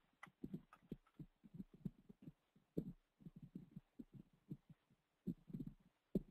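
Faint computer keyboard typing: short, soft keystroke thumps, several a second in an uneven run, with a pause about halfway through and a few sharper clicks.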